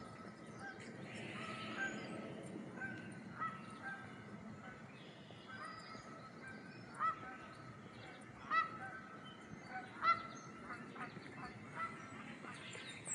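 Birds calling: a run of short, repeated honk-like calls, with louder ones about seven, eight and a half and ten seconds in.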